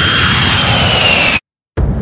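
Jet aircraft sound effect: a loud roar with a high whine that slowly falls in pitch, cutting off suddenly about a second and a half in.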